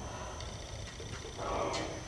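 Low-level room noise in a band rehearsal room: a steady low rumble and a faint, steady high-pitched whine. A short breathy sound comes about a second and a half in. No instruments are playing.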